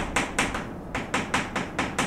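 Chalk striking a chalkboard while handwriting Korean characters, a run of short sharp taps about four a second.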